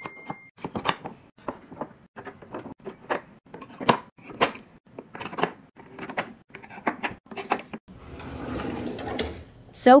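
Kitchen knives being set one after another into the slots of a wooden in-drawer knife block, a string of short clacks of knife against wood about two a second. Near the end a drawer slides with a rising swish.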